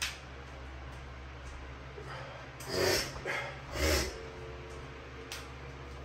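Handling noises from someone switching on a room light: two soft noisy bumps about three and four seconds in and a faint click near the end, over a steady low hum.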